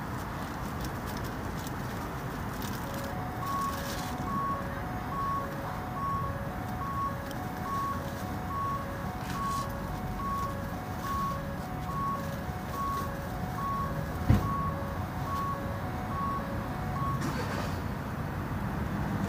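A vehicle's reversing alarm beeping at an even pace, about one and a half beeps a second, over a steady rumble of traffic. A single sharp knock comes near the end.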